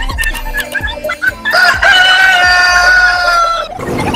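A rooster crowing once: a single long crow of about two seconds, its pitch falling slightly, after a few quick clicks. It is used as the sound of daybreak.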